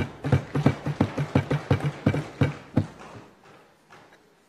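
Members of parliament thumping their wooden desks in approval, a quick run of about four knocks a second that fades out about three seconds in.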